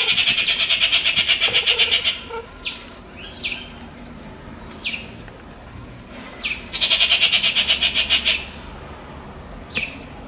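Bird calling: a rapid chattering run of about seven high notes a second at the start and another about seven seconds in, with short single notes sliding downward in between.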